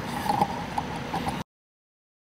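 Faint outdoor sound with a few light, irregular clicks and knocks, then an abrupt cut to silence about a second and a half in.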